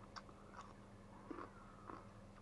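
Faint chewing of a crunchy brine-fermented cucumber: a few soft crunches and mouth clicks, spaced irregularly.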